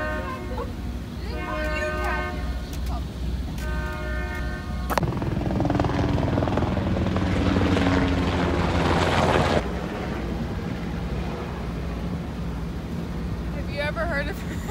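Three long horn blasts, each about a second, over a steady low engine hum. Then a helicopter flies overhead, its rotor noise loud for about four seconds before it cuts off suddenly, leaving the engine hum.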